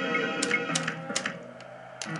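Pachislot slot machine reels being stopped one after another: three sharp clicks in quick succession as the stop buttons are pressed and the reels halt, over the machine's music.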